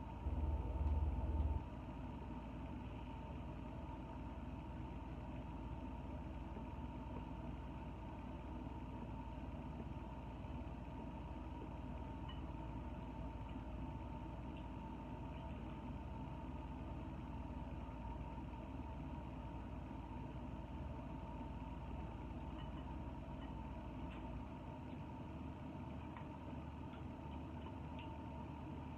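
Steady low hum of room tone with a faint constant whine, a little louder and rumbling in the first second and a half; a few faint clicks now and then.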